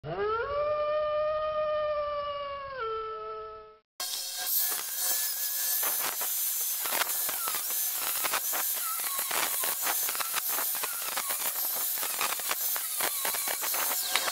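A single wolf howl that rises, holds, steps down in pitch and fades out by about four seconds in. Then an angle grinder cutting through metal welds, a steady loud grinding hiss with crackle and a whine that wavers as the disc bites.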